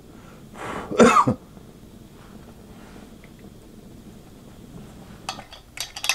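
A man coughs once, loudly, about a second in. Near the end come a few sharp clicks and knocks as a propane torch is picked up and moved.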